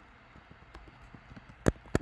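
Computer keyboard typing: a run of light key clicks, with two sharper, louder keystrokes near the end.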